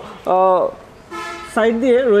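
A short, steady car horn toot of about half a second, a second in, quieter than a man's voice speaking briefly before and after it.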